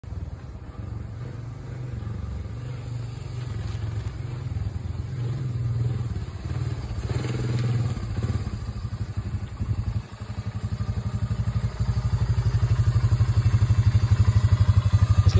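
1996 Honda FourTrax 300 ATV's single-cylinder four-stroke engine running as the quad rides across the lawn, growing louder as it comes closer. From about ten seconds in it runs with an even, low putter close by.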